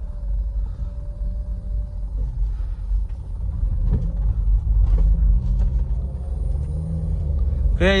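Steady low rumble of engine and road noise heard from inside the cabin of a 2010 Nissan Grand Livina on the move, its 1.8-litre four-cylinder engine and automatic gearbox pulling it along the road. A man starts speaking at the very end.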